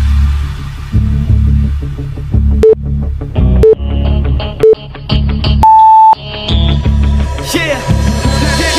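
Workout interval-timer beeps over background hip-hop music with a steady bass beat: three short beeps a second apart count down the last seconds, then a longer, higher beep about six seconds in marks the end of the exercise interval.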